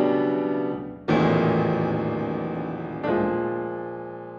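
Kawai concert grand piano playing sustained chords: one chord dies away, a new chord is struck about a second in and left to ring, and another about three seconds in, each fading slowly.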